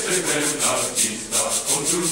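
A choir singing a Latin-style song over a steady, rapid swishing percussion rhythm, about five or six strokes a second.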